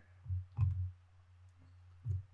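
A few light clicks with soft low thumps in the first second, from a computer mouse and laptop being handled on a table.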